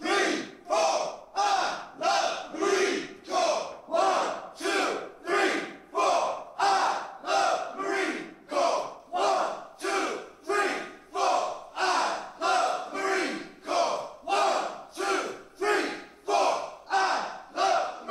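A platoon of men shouting together in unison, one short shout with each push-up, in a steady rhythm a little faster than one a second.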